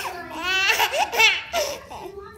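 Baby belly laughing in high-pitched, wavering bursts, the loudest about a second in.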